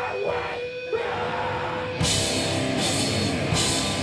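A heavy rock band playing live: a single note is held and sustained for about two seconds, then the full band comes in at once, with drums, repeated cymbal crashes and distorted guitar.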